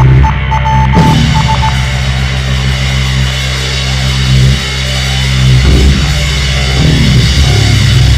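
Loud live band music, heavy and distorted, built on sustained low droning notes, with a short stuttering high tone in the first two seconds.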